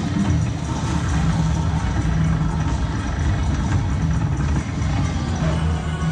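Tarzan video slot machine playing its free-games bonus music, a steady, low-pitched soundtrack.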